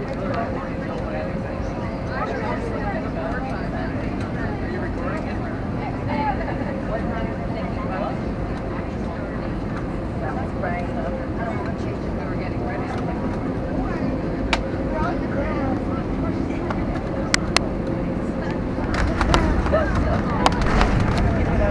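Airbus A321 cabin noise on final approach: the steady rush of engines and airflow with a faint constant hum. Near the end a few sharp clicks sound and the low rumble grows louder as the airliner comes down onto the runway.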